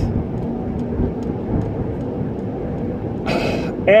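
Steady low rumble of a car's engine and tyres heard from inside the cabin while driving, with a short hiss a little after three seconds in.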